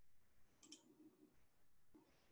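Near silence with a couple of faint computer mouse clicks.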